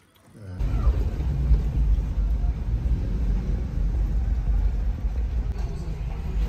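Low, steady rumble of a car driving, heard from inside the cabin: engine and road noise. It starts suddenly about half a second in.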